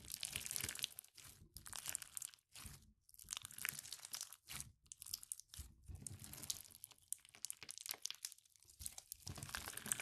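Clear bead-filled (fishbowl) slime squeezed and stretched by hand, the plastic beads crunching and crackling in bursts with brief pauses between squeezes and a longer lull near the end.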